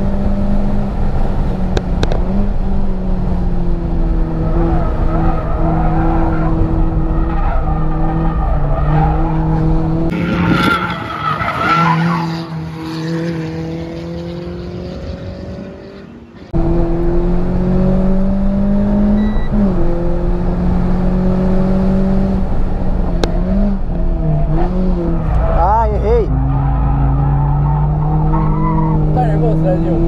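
Renault Sandero RS engine heard from inside the cabin, running hard at high revs on a race track. The pitch holds, drops and climbs again as the car brakes, shifts and accelerates out of corners, with tyres squealing through the turns. For about six seconds in the middle the engine sound gives way to a quieter car sound heard from the trackside, before the loud cabin sound cuts back in.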